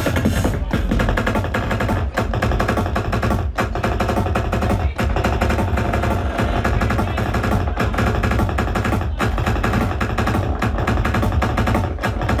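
Drum kit played fast and dense, a rapid stream of snare and tom hits in a drum-and-bass style, over steady electronic tones.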